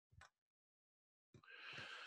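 Near silence: room tone, with a faint click just after the start and a soft breath drawn in near the end.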